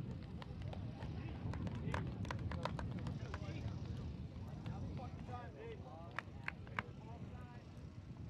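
Open-air field ambience: a steady low wind rumble, faint distant voices of players calling out, and scattered sharp clicks.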